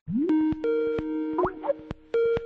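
Electronic sound effects: held synthetic tones that open with an upward slide, broken by sharp clicks and a few quick rising chirps.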